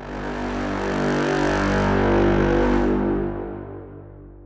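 Sampled orchestral brass chord played back over a low sustained bed: mellow brass through a stereo delay with raspier brass joining. It swells to a peak about two seconds in, then dies away.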